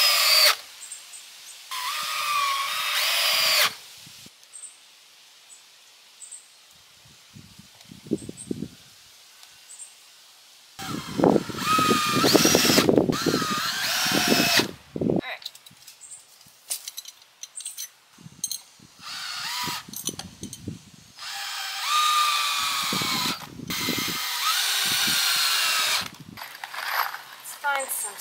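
Cordless drill driving screws into wood, in five separate runs of one to four seconds, the longest about halfway through; the motor whine rises and falls in pitch as the trigger is eased and squeezed. Small clicks and knocks from handling come between the runs.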